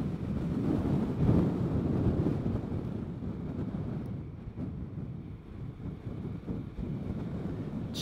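Wind buffeting a helmet chin-strap microphone over the running noise of a Vespa GTS 300 scooter on the move. It is louder for the first few seconds and eases off in the second half.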